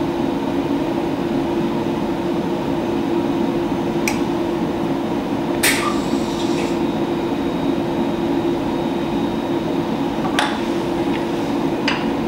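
Steady mechanical hum of a lab high-speed dissolver running during the pigment grind, with a few short sharp clicks about four, six and ten seconds in and again near the end.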